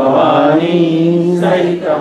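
Voices chanting a Sanskrit devotional prayer in a slow sung tone, holding one long note, then starting a new line about one and a half seconds in.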